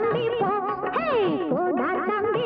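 Tamil film song music with a sliding melody line, including one long downward slide about halfway through.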